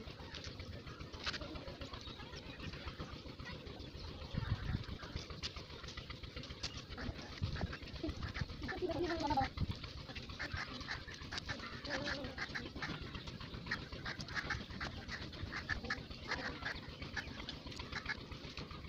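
Animal calls in the background, the clearest a brief rising-and-falling call about nine seconds in, over light clicking and rattling of wire mesh being handled.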